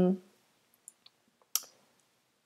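The end of a drawn-out spoken "um", then a few soft, short clicks, the clearest about one and a half seconds in.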